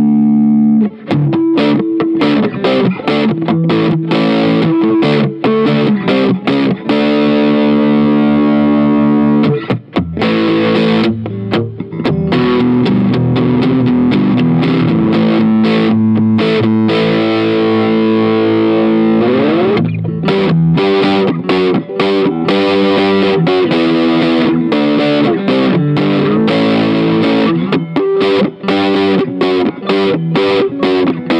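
Electric guitar played through a Marshall Guv'nor overdrive/distortion pedal: a distorted chord rings out, then riffs mixing chords and single picked notes. There is a brief break about ten seconds in and a slide up in pitch just before twenty seconds.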